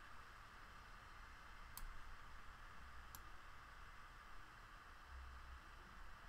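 Near silence: faint steady hiss, with two faint computer-mouse clicks about two and three seconds in.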